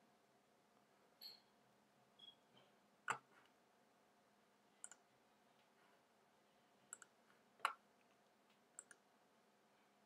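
Scattered computer mouse clicks, some in quick pairs, over near-silent room tone; the loudest come about three seconds in and near eight seconds in.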